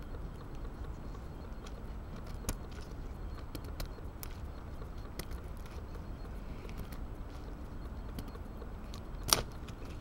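Steady low outdoor rumble with scattered light clicks and ticks as a knife and a green wood stick are handled, and one sharp click about nine seconds in.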